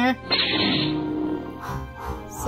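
Lightsaber ignition sound effect: a sudden hiss about a third of a second in, with a hum under it, fading over about a second.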